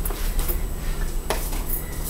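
Light handling noise and small knocks as fallen tarot cards are gathered up, with one sharp tap a little past halfway, over a low steady hum.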